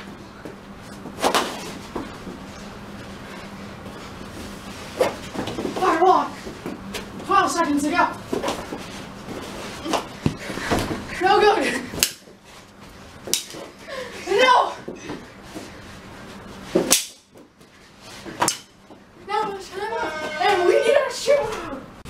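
Mini hockey play on a carpeted floor: a handful of sharp knocks from plastic sticks and ball, with bursts of children's shouting between them.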